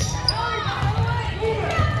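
Court sounds of a girls' basketball game: a basketball bouncing on the hardwood gym floor amid players' and coaches' indistinct shouts.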